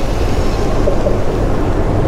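Steady low rumble of outdoor background noise filling a pause in conversation, with no distinct event standing out.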